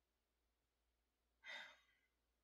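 Near silence, broken about one and a half seconds in by a single short, soft sigh from a woman.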